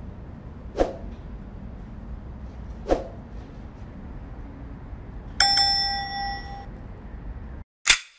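A bell-like ding rings out about five and a half seconds in and fades over about a second, over a steady low background rumble. Two sharp clicks come earlier, and one sharp hit just before the end as the background cuts out.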